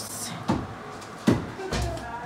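A few short knocks, then a low thump near the end.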